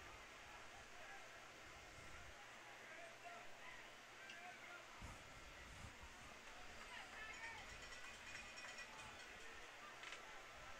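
Near silence: faint open-air field ambience with distant, indistinct voices.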